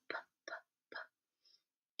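A woman softly sounding out the letter P as a phonics cue: three short, breathy 'p' puffs about half a second apart, without voice.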